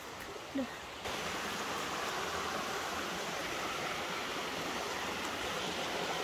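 Water rushing over rocks in a small river, a steady hiss of running water that comes in abruptly about a second in.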